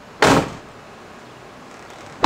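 The rear door of a Mercedes Sprinter van shutting once, a single loud short bang about a quarter second in.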